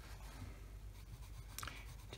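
Koh-i-Noor Tri Tone colored pencil scratching faintly on a colouring-book page in small strokes, with a slightly louder stroke near the end.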